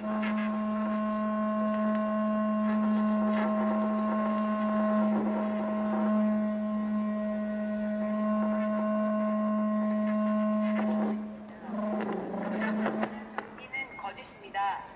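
A steady held tone with several overtones. It stays level for about eleven seconds, then cuts off. Faint speech-like sounds follow near the end.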